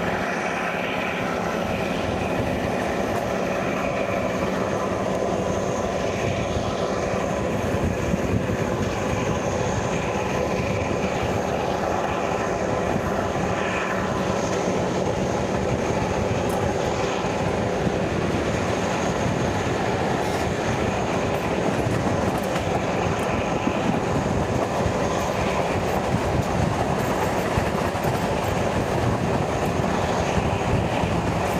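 A passenger train rolling out of a station and running over the track and points, a steady rumble of wheels on rails heard from an open carriage window, with a few faint clicks.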